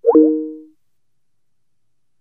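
Microsoft Teams call-ending tone: a short electronic chime, a quick upward swoop settling into two low notes that fade away within under a second, as the meeting call is left.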